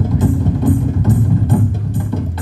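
Bedug, large Indonesian barrel drums, beaten by an ensemble in a steady fast rhythm: loud low strokes with sharp attacks.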